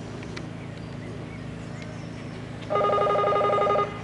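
An electric bell rings once for about a second, near the end, starting and stopping abruptly: the show-jumping start bell telling the rider to begin the round. A steady low hum runs underneath.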